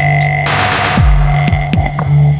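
Instrumental electronic hip-hop beat: deep kick drums that drop in pitch, three in the second half, with a noisy snare-like hit about half a second in, over a steady low droning hum.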